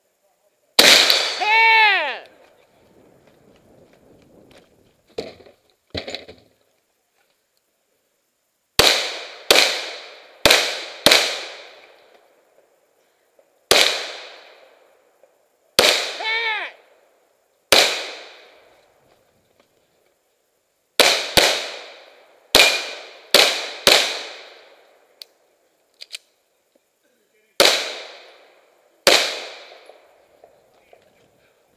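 Shotgun shots in irregular strings, about fifteen loud sharp reports each trailing off in an echo, with two fainter pops after the first. The first shot, and one about two-thirds of the way through the strings, ring on with a tone that slides down in pitch.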